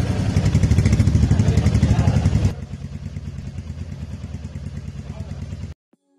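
Royal Enfield Meteor 350's single-cylinder engine just started, running with a fast, even beat. It is loud for about two and a half seconds, then settles to a quieter steady idle, and cuts off suddenly near the end.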